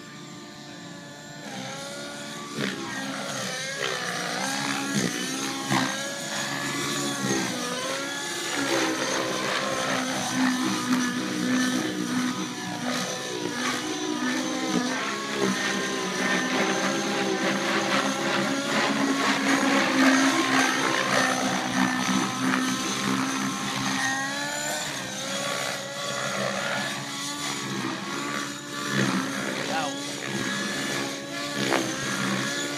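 Radio-control model helicopter flying aerobatics, its motor and rotor pitch repeatedly rising and falling as it manoeuvres. The sound grows louder from a couple of seconds in and is loudest about two-thirds of the way through.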